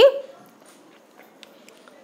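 A woman's voice finishing a word on a rising pitch, then quiet room tone with a few faint ticks.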